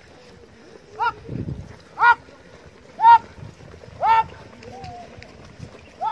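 Short, high shouted war cries, one about every second, each rising and then falling in pitch, over the low rumble of a crowd running during a mock tribal battle.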